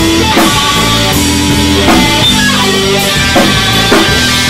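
Loud instrumental rock music: sustained guitar chords over a drum kit, with a hit roughly every three-quarters of a second and no singing.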